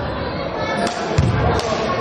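Volleyball bounced on a sports-hall floor, with a dull thud about a second in, amid indistinct voices echoing in the hall.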